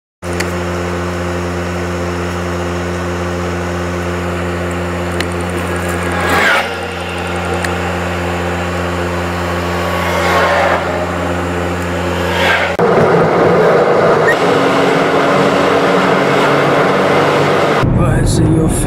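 Car driving on a highway, heard from inside the cabin: a steady low engine and drivetrain hum, with oncoming vehicles rushing past three times, one of them a large truck. About two-thirds through, the hum gives way to louder, rougher road and wind noise.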